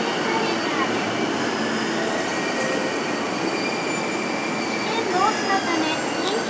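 A train running in the station: a steady loud rumble with several high squealing tones held over it.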